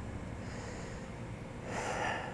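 A man's short audible breath near the end, taken during a pause in his speech, over a faint steady background hiss.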